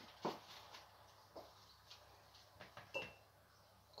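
Faint scattered clicks and knocks of kitchen things being shifted while rummaging in a cupboard, about five in all, with a short high squeak near three seconds in.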